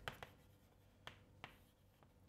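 Chalk writing on a blackboard: four faint, short taps of chalk strokes, with near silence between them.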